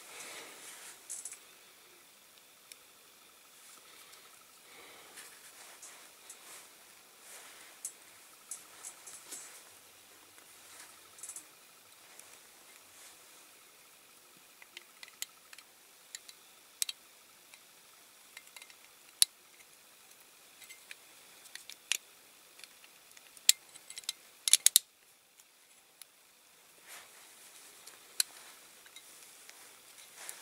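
Small clicks and taps of a die-cast toy road roller's cab and body being handled and pressed together by fingers. The clicks are scattered and grow more frequent in the second half, with the loudest in a quick cluster about five seconds before the end.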